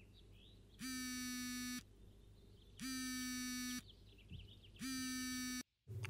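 Telephone ringback tone while a call connects: a buzzy tone about a second long, three times with about a second's gap between. Faint bird chirps sound in the gaps.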